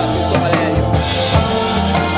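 Live jazz group playing: a drum kit over a keyboard part, with a bass line that steps between held low notes.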